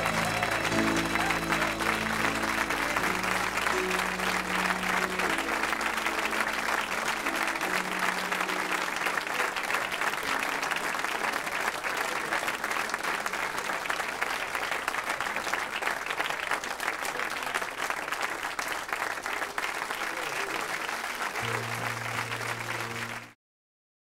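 Audience applauding, with held instrumental chords playing softly underneath. The sound cuts off abruptly near the end.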